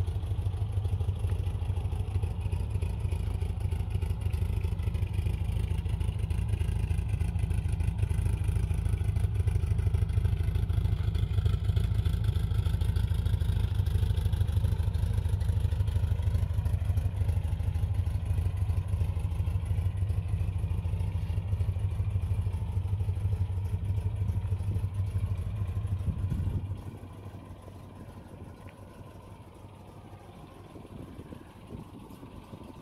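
A 1964 MGB roadster's 1.8-litre four-cylinder engine runs at a steady low speed as the car drives slowly past. About 26 seconds in the sound drops sharply to a much quieter, steady idle as the car comes to rest.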